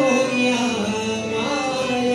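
Marathi devotional bhajan: a man singing an abhang in a gliding, ornamented line over sustained harmonium tones, with Indian hand-drum accompaniment.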